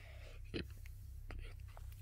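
A quiet pause with faint breathy noise and a few soft clicks.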